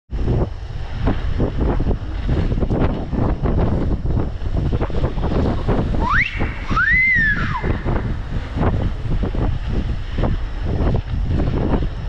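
Wind buffeting a helmet-mounted GoPro Hero 10 microphone while riding a bicycle, a loud, rumbling rush throughout. About six seconds in, a short high-pitched sound glides upward, followed by a second one that rises and then falls.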